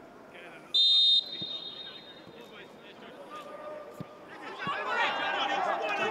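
Referee's whistle blown once for kick-off, a single short shrill blast about a second in. Then a few dull kicks of the ball, and from about five seconds in, players' raised voices calling across the pitch.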